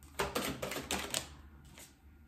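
Tarot cards being handled: a quick run of crisp paper clicks and flicks as the cards are shuffled and one is drawn from the deck, with two fainter flicks near the end.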